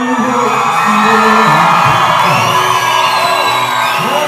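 Live acoustic guitar playing, with an audience cheering and whooping over it. High whistles rise above the noise, which is loudest in the middle.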